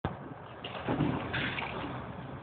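Steady running noise of a moving train heard from inside the carriage, with a brief louder indistinct sound about a second in.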